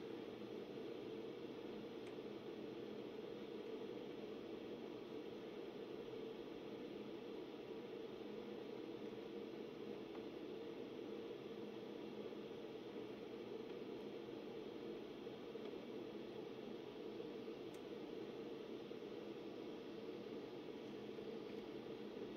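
Dell PowerEdge T420 server's cooling fans running, a low steady whir.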